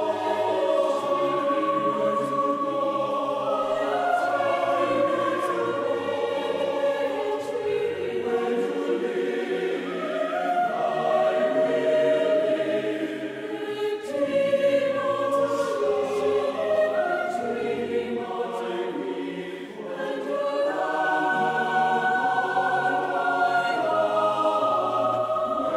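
A choir singing slow, sustained chords in several voice parts, with a brief dip in volume near the end.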